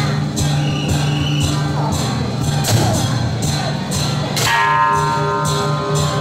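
Music with repeated percussion strikes under held melodic notes; a higher held note enters about four and a half seconds in.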